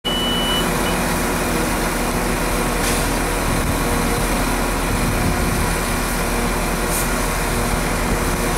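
Irish Rail 22000 class diesel multiple unit's underfloor diesel engines running steadily at the platform before departure, with a short high beep at the very start.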